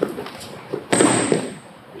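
A sharp impact about a second in, a slap and thud of hands and knees hitting the foam training mat as a grappler is snapped down to all fours in a head snag takedown. It dies away within about half a second.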